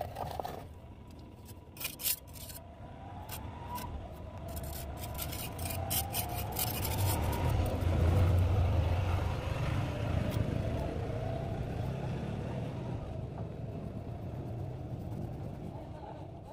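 A road vehicle passing by: a low engine rumble that swells to its loudest about eight seconds in and then slowly fades. A few sharp clicks come about two seconds in.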